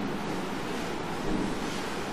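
Steady rushing background noise of a room and its microphone, even throughout, with no distinct sound event.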